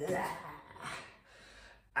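A man's pained voice trailing off, then a few gasping breaths about half a second in, fading to near quiet. It is his reaction to hurting his fingers on a strike.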